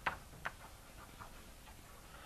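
Chalk tapping on a blackboard while words are written: a sharp tap at the start and another about half a second in, then a few fainter ticks.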